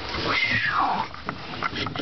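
A toddler's high squeal, one call that slides down in pitch and lasts under a second, followed by a few light knocks.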